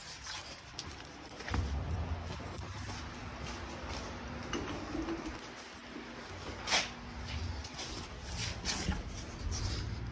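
Quiet handling and movement noise as a phone camera is carried across a garage floor: low rumbles from footsteps and the phone being handled, faint scattered clicks, and one sharper click about two-thirds of the way through.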